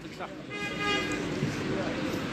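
A vehicle horn sounding one steady note, starting about half a second in and lasting under a second, over crowd chatter.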